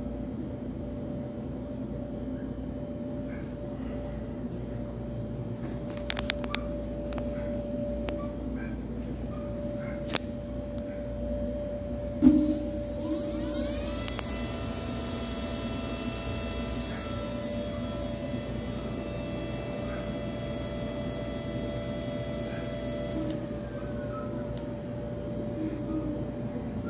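Brushless hub motor of an electric scooter overvolted to 60 volts, spinning the rear wheel up with the throttle: after a thump about twelve seconds in, a whine rises for a couple of seconds, holds steady for about nine seconds, then cuts off.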